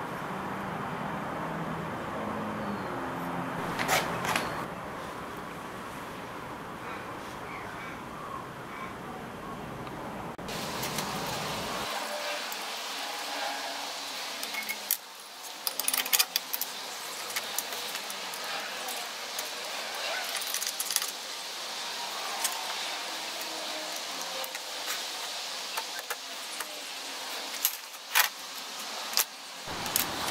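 Small steel parts and hand tools clinking and tapping against each other and the pedal box as a cable linkage is fitted. There is a single sharp click about four seconds in, then clusters of light metallic clicks in the second half.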